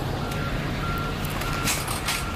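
Ambulance's reversing alarm beeping, a single-pitch beep about twice a second, over the low rumble of its running engine.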